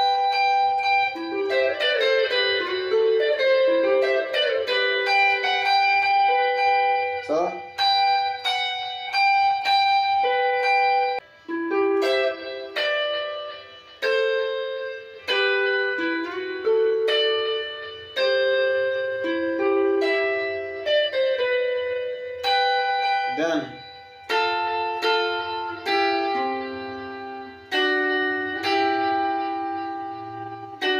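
Fender electric guitar playing a seben (soukous) lead melody as a running line of single picked notes, with two quick slides up the neck, about seven seconds in and again near 23 seconds.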